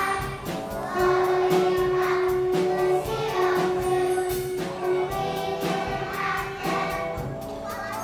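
A group of young children singing a song together in chorus, holding long notes, with music.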